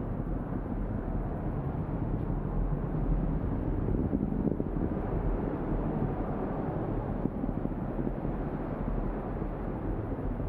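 Falcon 9 rocket's nine Merlin engines heard from the ground as a steady, low, distant rumble.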